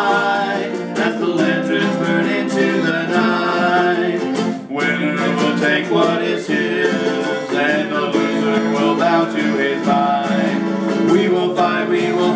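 An acoustic guitar and a ukulele strummed together while two men sing.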